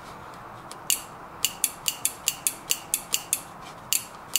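Toyota automatic transmission solenoid valve clicking as its leads are touched on and off a car battery: one click about a second in, then a quick run of about ten clicks at roughly five a second, and one more near the end. The clicking is the sign that the solenoid works.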